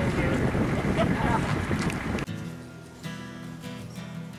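Wind buffeting the microphone, with faint voices behind it. A little over halfway through it cuts off suddenly and acoustic guitar music begins.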